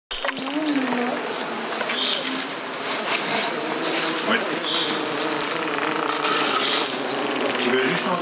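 Beatless opening of a dark psytrance track: electronic sound design with a dense noisy texture, wavering low tones and short high blips.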